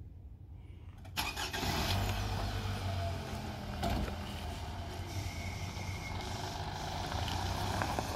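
A 2010 Toyota Camry's engine cranks and starts about a second in, then keeps running steadily.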